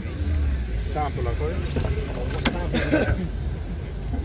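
A car door's latch clicks open about two and a half seconds in, with people talking nearby and a steady low rumble underneath.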